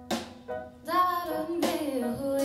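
A live keyboard-and-drums duo playing: sustained electric keyboard notes with drum-kit hits near the start and near the end, and a woman's voice coming in singing about a second in.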